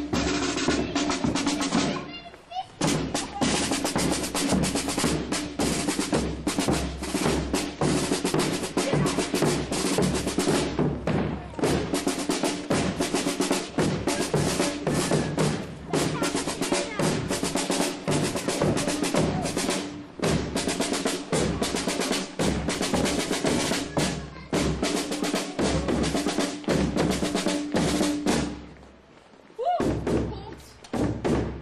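Marching band drums playing a street march: snare drum rolls over bass drum beats, in a steady rhythm. The drumming breaks off briefly about two seconds in and stops shortly before the end.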